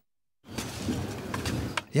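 After a brief moment of silence, shovels dig and scrape into wet earth, giving a steady rough crunching with a few small clicks.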